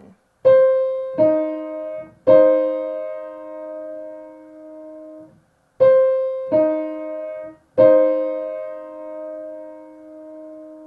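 Piano playing one interval twice, each time broken then blocked: a single note, then a second note, then both struck together and left to ring. The second playing starts just under six seconds in.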